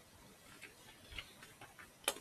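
Faint, irregular typing on a computer keyboard: about eight light key clicks over a second and a half, starting about half a second in.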